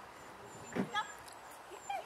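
A small dog giving two short, high-pitched barks, one a little under a second in and one near the end.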